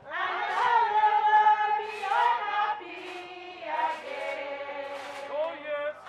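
A group of people singing a hymn together in several voices, one sung phrase running into the next.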